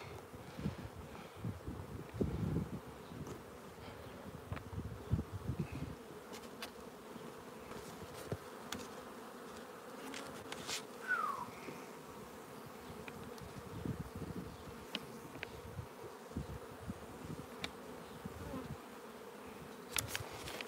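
Honeybees buzzing around the hives as a faint, steady hum, with a few low bumps in the first few seconds.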